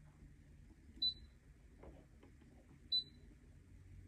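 Two short high-pitched confirmation beeps, about two seconds apart, from the touchscreen of a Brother ScanNCut DX SDX125 cutting machine as its on-screen buttons are pressed.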